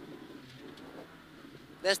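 Suzuki Swift rally car running at speed, heard inside the cabin as a low, fairly quiet engine drone with road noise.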